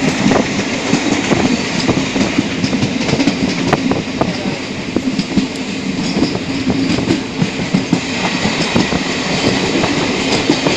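Passenger train running along the track, heard from on board: a steady rumble of wheels on rail with irregular clicks and clatter.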